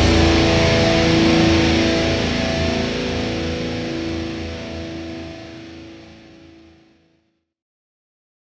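Final chord of a heavy rock song: an electric guitar chord struck and left ringing, fading out over about seven seconds.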